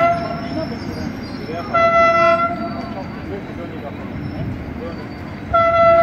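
A horn sounding in three single-pitched blasts: one ending about half a second in, a short one about two seconds in, and another starting near the end, over low street and vehicle noise.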